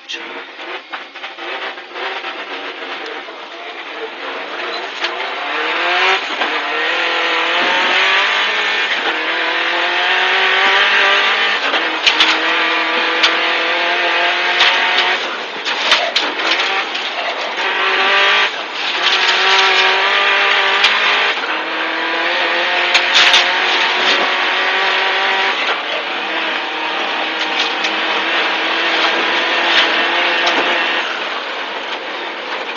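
Subaru Impreza WRX STI N12b rally car's turbocharged flat-four engine, heard from inside the cabin, pulling away hard from a standstill and accelerating through the gears. Its pitch climbs and drops back with each upshift. A few sharp knocks sound in the middle stretch.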